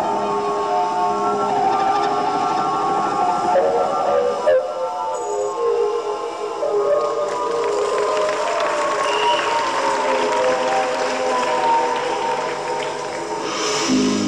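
Live band music on an audience recording: sparse, sustained synthesizer tones, with several pitches gliding slowly downward in the second half.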